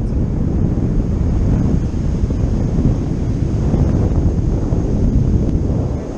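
Loud wind buffeting the camera microphone as the tandem paraglider flies through the air, a steady low rumble.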